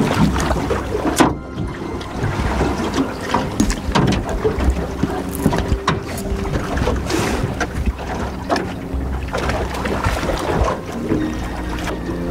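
Wind buffeting the microphone over choppy water, with water slapping and splashing against the side of an aluminium boat where a hooked hammerhead shark thrashes at the surface. A sharp knock sounds about a second in.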